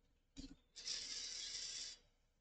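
VEX EXP smart motor and its gear train running briefly to turn the motor shaft 360 degrees and raise the robot's arm. A faint click, then a faint steady gear noise for about a second that stops just before the end.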